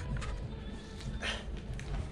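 A trigger spray bottle squirts a short burst about a second in, over background music.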